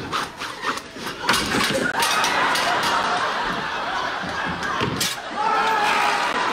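Sitcom studio audience laughing, with a few sharp thumps and knocks from the slapstick scuffle on the set, one about a second and a half in and another about five seconds in.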